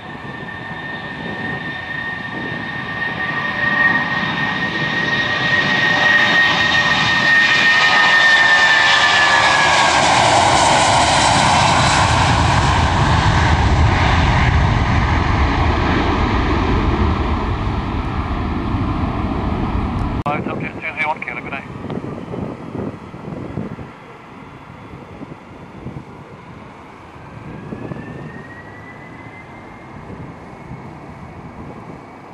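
Boeing 757 jet airliner taking off: the engine noise builds over several seconds, a high whine drops in pitch as it passes, then the sound fades as it climbs away. Near the end a fainter whine begins, rising in pitch.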